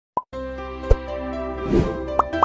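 A short pop sound effect, then a soft music bed of held tones begins, with a click about a second in and a whoosh near the end: sound design for an animated intro.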